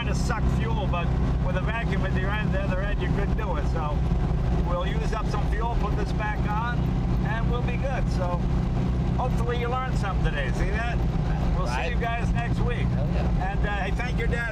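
Honda Z600's small air-cooled two-cylinder engine running steadily at cruising speed, a constant low drone heard inside the small cabin. Voices and laughter are heard over it.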